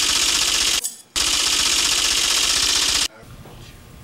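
A dense, rapid clattering rattle in two bursts, the first about a second long and the second about two seconds, each cutting off suddenly.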